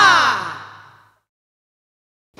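Closing sound of a Bhojpuri Holi folk song: a pitched tone gliding down in pitch that fades out over about a second at the end of the track.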